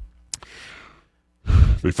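A man's sigh, a short breathy exhale into a close microphone lasting about half a second, after a soft mouth click; he starts speaking again near the end.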